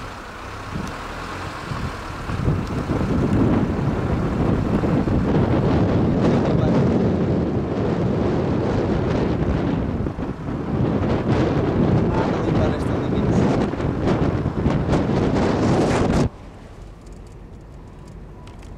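Wind buffeting the camera microphone, a loud crackling rush that fills the sound. About sixteen seconds in, it cuts suddenly to a much quieter, steady drone inside a moving car.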